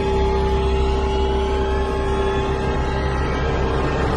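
Film score: a long held note over a steady deep rumble.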